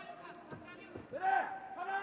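A man's voice calling out in long, drawn-out sounds, starting about a second in, over faint background noise from the wrestling arena.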